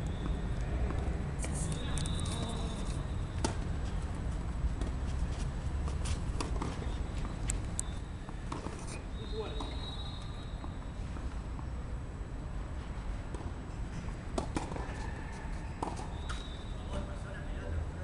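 Outdoor ambience with a low steady rumble, faint indistinct voices and scattered sharp clicks and knocks.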